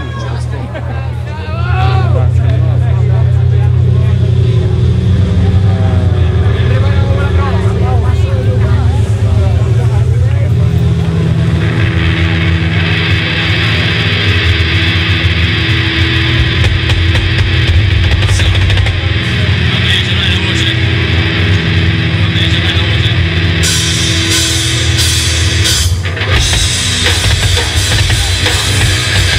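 Nu-metal band playing live through a PA. A loud bass-and-drum intro kicks in about two seconds in, distorted guitars fill out the sound from about twelve seconds in, and it grows brighter again near the end.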